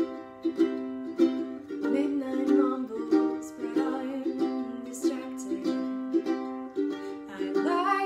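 Acoustic ukulele strummed in a steady rhythm of chords, an instrumental passage of a pop song.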